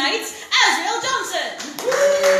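A person speaking while an audience claps, the clapping building from about a quarter of the way in.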